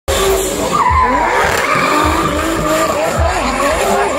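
Drift car's engine revving up and down in pitch while it slides, with tyre squeal from the spinning rear tyres.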